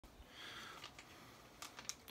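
Near silence: a soft breath, then a few faint clicks in the second half.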